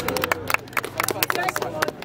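Scattered, uneven handclaps from a small crowd, with voices calling out over them.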